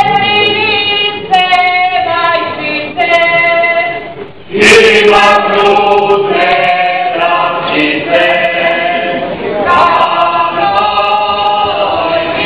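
A group of women's voices singing a Serbian folk song a cappella, in held, drawn-out phrases with short breaks between them; the singing comes back in louder about halfway through.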